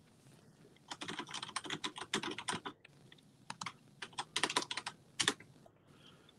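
Typing on a computer keyboard: a quick run of keystrokes starting about a second in, a short pause, then a few scattered keys and a second short run near the end.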